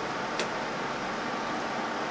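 Steady fan-like background noise, with one faint click about half a second in.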